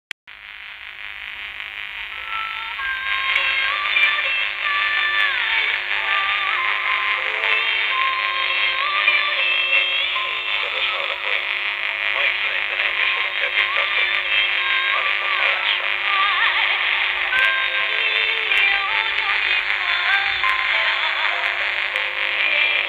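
Distant medium-wave AM reception of Sunrise Radio on 1458 kHz, played through a portable radio's small speaker: music aimed at an Asian audience, with melodic gliding lines, thin and muffled by the narrow AM bandwidth. It fades up over the first couple of seconds, and a faint steady tone runs underneath.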